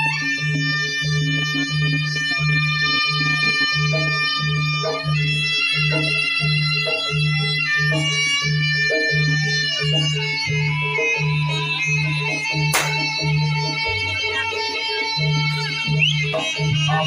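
East Javanese jaranan-style gamelan music: a reed trumpet (slompret) plays long held notes over a steady low drum-and-gong beat about twice a second. A sharp whip crack sounds about three-quarters of the way through.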